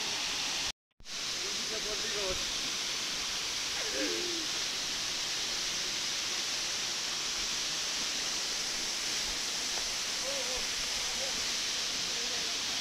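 Steady rushing of a waterfall plunging into a pool, with a brief dropout about a second in.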